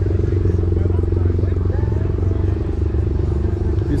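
An engine running steadily nearby, a low, even drone with a fast regular pulse, with people's voices faint behind it.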